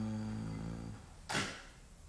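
A man humming one steady low note with closed lips, fading out about a second in, followed by a brief noisy burst.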